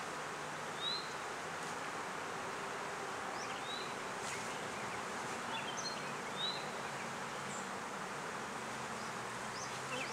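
Honey bees from an opened hive buzzing steadily, with a few short high chirps over the buzz.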